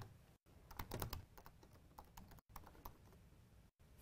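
Faint keystrokes on a laptop keyboard typing a short terminal command: a quick run of key taps about a second in, then a few scattered taps.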